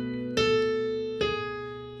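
Piano playing a held B minor 7 chord, with the right hand starting a line from the root. New notes are struck about a third of a second in and again just past a second in, each ringing and fading away.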